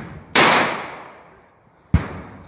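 A single rifle shot fired into the air, a sharp crack with an echo that fades over about a second. A brief low thump comes just before the end.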